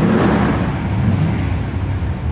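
Engines of a Chevy truck and a Chevy Impala SS heard far down the drag strip at the end of their quarter-mile pass: a low, steady rumble that is loudest at first and then eases off slightly.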